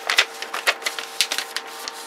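A sheet of paper being unfolded and handled, giving a quick, irregular run of crackles and clicks.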